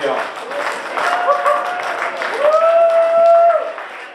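Audience applauding and cheering, with one long high held whoop from about two and a half seconds in.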